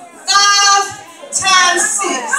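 A woman's voice over a microphone crying out two long, high, strained half-sung calls, each about half a second, the impassioned delivery of a preacher.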